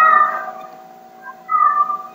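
Two short, high cries, each falling slightly, one at the start and one about a second and a half in, like an animal's calls, over a steady low hum.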